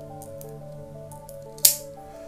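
Quiet background music with steady held notes, and one short, sharp click about one and a half seconds in as BBs are loaded into an airsoft pistol's gas magazine.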